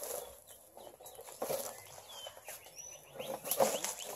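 Dry leaf litter crackling and rustling underfoot, with a couple of short high bird chirps past the middle and a louder crackle near the end.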